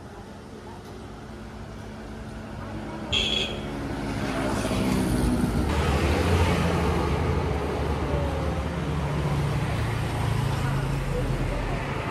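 A motor vehicle passes on the road: its engine hum builds from about two seconds in, is loudest around six seconds and stays loud after that. A short high-pitched sound cuts in briefly about three seconds in.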